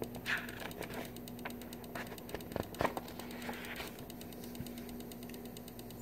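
Quiet room tone with a steady low hum and a few faint clicks and rustles. No music or speech is heard.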